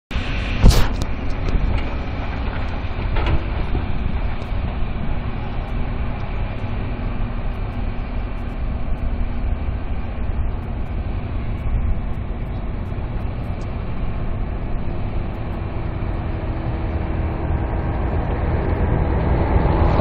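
Steady, low rumble of heavy diesel earthmoving machinery, a loader and dump truck working on a construction site, with a sharp knock just under a second in.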